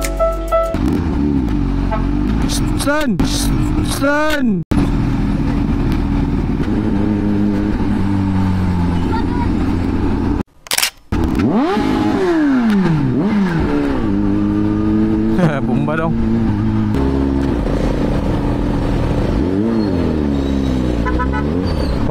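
Kawasaki Z H2 motorcycle engine revving up and down several times, over music. The sound cuts out briefly twice.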